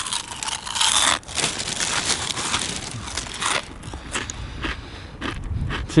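A mouthful of dry cornflakes being crunched and chewed close to the microphone. Dense crunching for about the first three and a half seconds, then sparser crunches.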